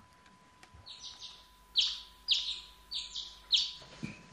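Birds chirping, a garden sound effect: a series of short, high chirps, about half a dozen, starting about a second in.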